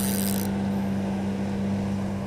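Spinning reel being cranked to bring in a hooked fish, over a steady low hum from the boat's electric trolling motor.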